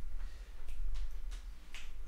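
A few sharp clicks, about four or five in two seconds, over a steady low hum.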